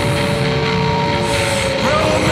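Sludge metal band's droning, distorted passage: sustained guitar tones sliding slowly down in pitch over a dense wash of noise, with squealing feedback-like glides near the end and no clear drumbeat.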